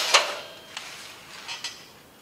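Metal clinks of a hand tube bender and its bending die being handled: a metallic ring fades away at the start, followed by a few light clicks.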